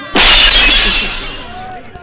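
A glass thrown down onto asphalt shatters with a sudden loud crash. The tinkle of broken glass dies away over about a second.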